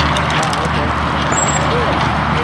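Steady highway traffic noise with no sudden event standing out.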